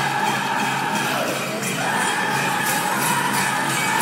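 Powwow drum group singing a men's chicken dance song over a steady drumbeat, with the jingling of the dancers' bells; a voice slides upward about halfway through.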